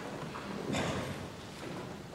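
Congregation getting up from the pews: shuffling feet with scattered knocks and creaks, a cluster of them about three-quarters of a second in.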